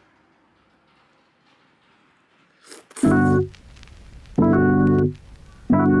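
Background piano music: very quiet at first, then a short noisy sound and piano chords coming in about halfway, struck roughly every second and a half.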